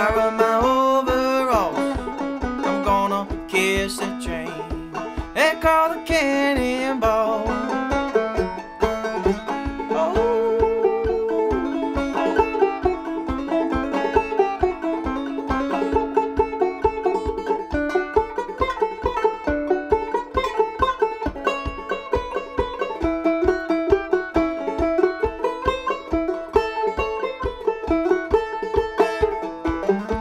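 A half-plastic 1976 Bicentennial banjo picked in an instrumental break, a quick run of plucked notes in a steady rhythm.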